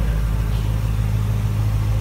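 Steady low machinery hum, unchanging, of a running engine or motor in a workshop.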